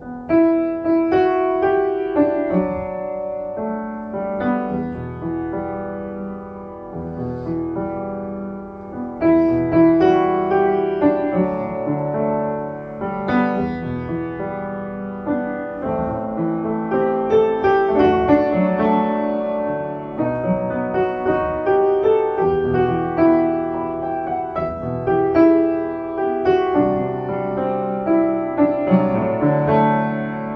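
Solo upright piano playing a pop song arrangement, chords and melody in both hands. It comes in with a loud chord at the very start and plays continuously after that.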